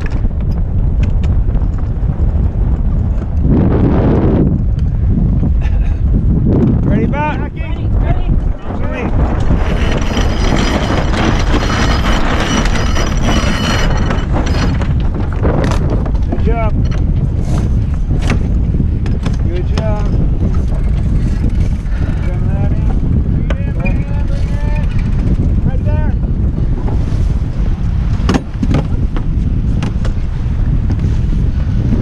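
Wind buffeting the microphone and water rushing along the hull of a sailboat under way during a tack. From about ten to fourteen seconds in, a steady high whirring as a cockpit winch is cranked to sheet in.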